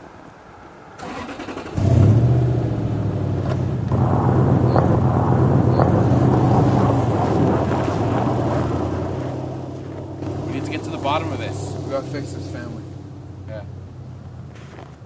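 An SUV's engine starts suddenly about two seconds in, runs steadily and then fades over several seconds as the vehicle drives away.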